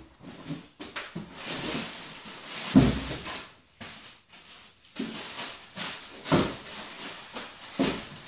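Rummaging inside a large cardboard box of packaged goods: irregular rustling of packaging and cardboard, broken by a few dull knocks, the loudest about three seconds in.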